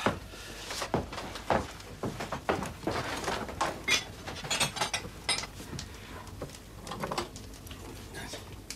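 Rummaging through a wooden cupboard: metal utensils and crockery clink and clatter among irregular knocks of wood.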